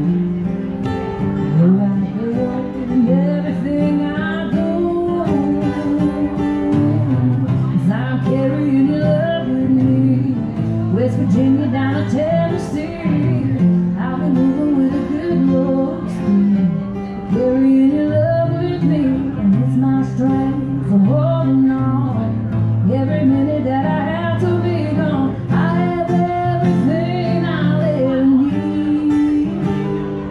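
A woman singing a song live into a microphone, accompanied by a strummed acoustic guitar.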